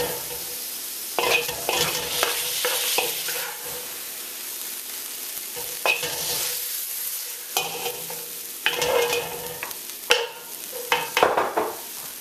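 Thinly sliced beef sizzling in a hot wok with a steady hiss, while a wooden spatula scrapes and pushes it across the pan in a series of short strokes as the meat is cleared out.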